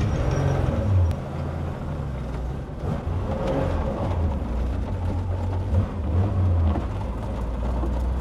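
Naturally aspirated air-cooled flat-six of a Porsche 911 race-style build, driving under way, heard from inside its bare cabin. The engine note rises and falls in level, dropping back about a second in.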